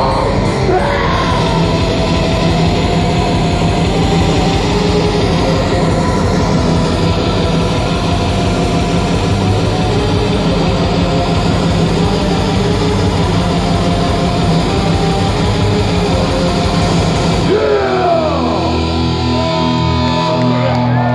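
Live industrial black metal through a club PA: distorted guitars over very fast programmed drums. Near the end the drums stop and a low held chord rings on while the crowd begins whooping.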